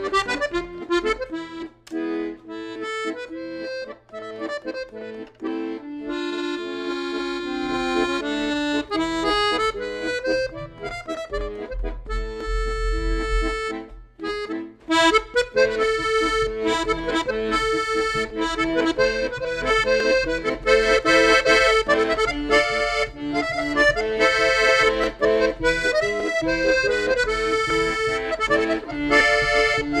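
Rossetti 2648 piano accordion with two sets of middle (MM) reeds playing a tune: a melody and chords on the treble keys over low notes from the bass buttons, with a brief pause about halfway through.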